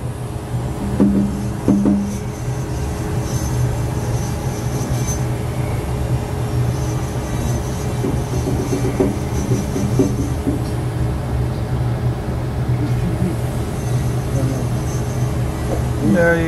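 A steady low machine hum runs throughout, with a few short, muffled voice sounds about a second in and again around nine seconds.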